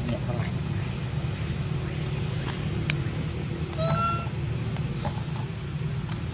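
One short, high-pitched squeal from a baby long-tailed macaque about four seconds in, over a steady low rumble.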